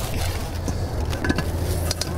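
A steady low rumble, with a few light clicks and knocks from cooking gear being handled.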